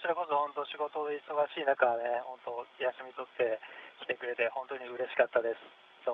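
Speech in Japanese, heard thin and narrow over a radio-like audio link.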